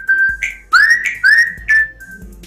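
Mobile phone ringtone: high whistle-like tones, a held note, then two quick upward swoops and a short final note, over background music with a low steady beat.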